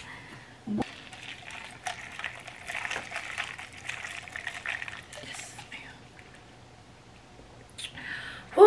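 Creamer poured into a glass jar of iced coffee and stirred with a plastic straw: liquid splashing with small clicks against the glass for a few seconds, dying down near the end.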